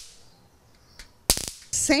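Electric mosquito racket cracking as sparks jump across its charged wire grid: a faint snap about a second in, then a loud crack with a short buzzing tail.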